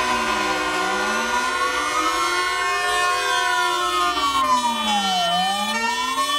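Fire engine siren wailing, its pitch gliding slowly up for about two seconds and down for about two seconds, then rising again near the end, with a steady tone sounding beneath it.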